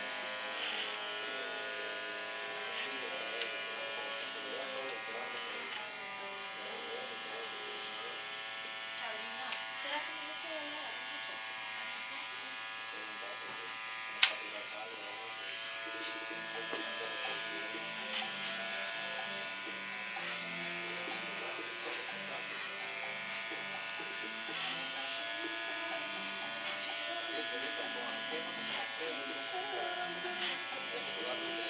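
Electric hair clippers running with a steady buzz while cutting a boy's short hair. There is a single sharp click about fourteen seconds in.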